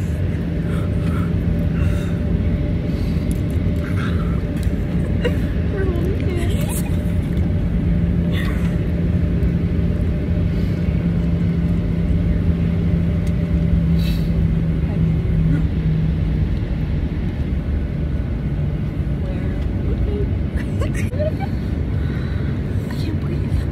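Airliner cabin noise: the jet engines and airflow make a steady low rumble with a constant hum, which wavers and breaks up about three-quarters of the way through.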